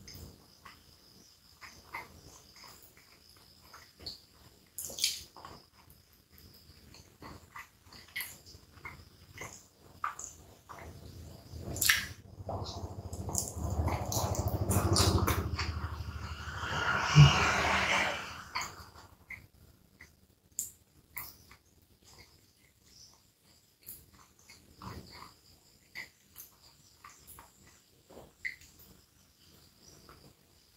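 A person eating a hot dog: soft wet clicks and smacks of chewing bread and sausage. About halfway through comes a longer, louder stretch of wet sucking and smacking as fingers are licked, with a sharp click near its end.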